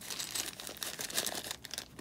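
Hands rummaging through crinkle-cut paper packing shred and handling a clear plastic bag: irregular crinkling and rustling.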